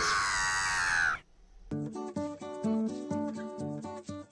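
A seagull's cry, one long squawk lasting about a second, followed from about two seconds in by plucked guitar music.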